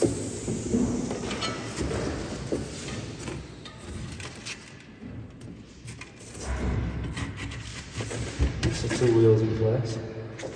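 Handling noise of a bicycle rear wheel being unstrapped and lifted in a hard-shell bike box: straps pulled, scuffs and a few knocks, with a sharp knock a little past eight seconds in. A man's voice is heard briefly near the end.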